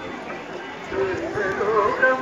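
Voices of a festival crowd, people talking and calling out over one another.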